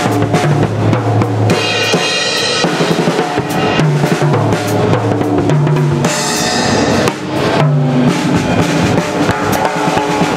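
Acoustic drum kit played live with sticks: bass drum, snare and toms in a busy groove, with cymbal crashes about two seconds in and again around six seconds.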